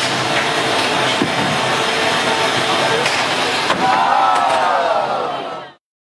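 A beetleweight robot-combat fight in a plexiglass arena: a loud, dense din with a few sharp knocks of the robots hitting each other or the arena, and raised voices near the end. The sound cuts off suddenly just before the end.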